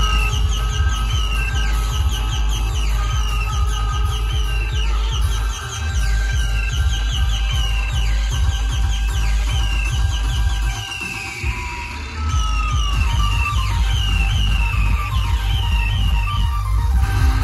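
Loud electronic dance music from a large DJ sound system, with heavy bass and a repeating falling high-pitched synth effect over it. The bass drops out briefly about a third of the way in and again for about a second past the middle.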